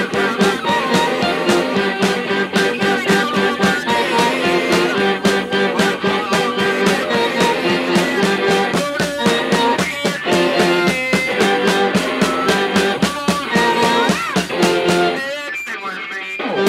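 Live garage-punk band playing loud: distorted electric guitar over a driving, evenly repeating beat. The level drops briefly near the end.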